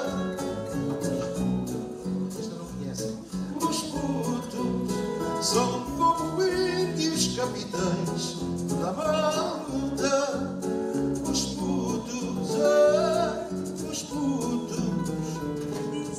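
A live Portuguese guitar (guitarra portuguesa) plays plucked notes to accompany a man singing into a microphone, his voice wavering with vibrato on held notes.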